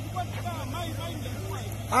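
Onlookers' voices talking in the background over a steady low hum, ending in a loud shout.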